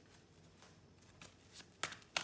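Quiet at first, then a deck of tarot cards being shuffled by hand: a few faint strokes, then a loud one near the end.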